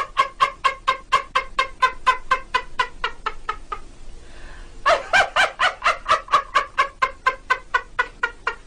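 Rapid cackling laughter, about five short pulses a second, breaking off for about a second near the middle and then starting again.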